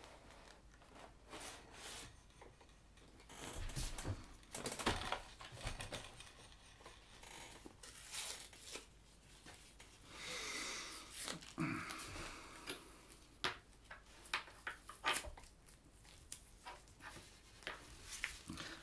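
Paper stickers being peeled from their backing sheet and handled: soft papery rustles and peeling with scattered light clicks and taps, including a longer rustle about ten seconds in.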